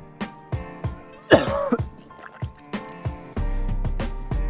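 A person retching once: a loud vomiting heave about half a second long, starting about a second and a half in. Background music with a steady beat plays throughout.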